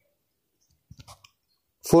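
A few faint, short clicks about a second in, then a man's voice starts speaking near the end.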